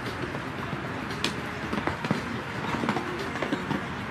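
Horse cantering and jumping on a sand arena: a run of irregular sharp knocks, hoofbeats, from about a second in, over a steady outdoor rumble.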